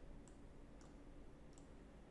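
Near silence: room tone with three faint computer mouse clicks spread through it.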